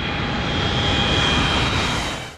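Jet airplane engine sound effect: a steady rushing noise with a high whine running through it, fading out shortly after.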